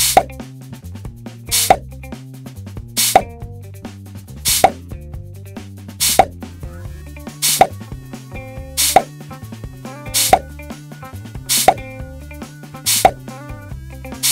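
A cartoon-style plop sound effect repeating about every one and a half seconds, about ten in all, one for each toy figure dropped into the bowl of balls, over background music with a steady repeating bass line.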